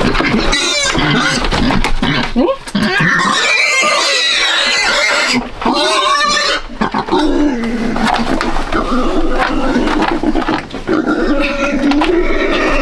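Black pigs squealing loudly almost without pause, with a few short breaks, as they are grabbed and held by hand in the pen.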